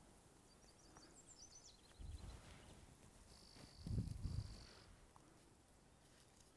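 Near silence of an open field: a few faint high chirps early on, a thin steady high tone held for about a second and a half past the middle, and two soft low rumbles.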